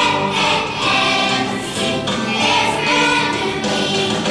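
Large youth choir singing together, holding sustained notes in short phrases.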